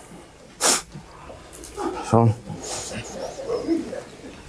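A pause in speech broken by one short, sharp breath about a second in, then a man's brief 'So...'.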